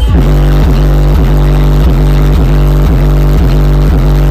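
A hip-hop beat's deep 808 bass played very loud through a car's subwoofer system, heard inside the car's cabin, with heavy bass notes hitting over and over, about two to three a second.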